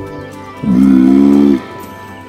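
A walrus bellow sound effect: one steady, low call lasting about a second, starting a little under a second in, over soft background music.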